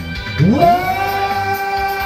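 A man singing karaoke through a handheld microphone over backing music, his voice sliding steeply up about half a second in and then holding one long high note.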